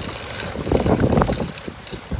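Water churning and splashing behind a small boat from an electric trolling motor's propeller running close to the surface, with wind buffeting the microphone.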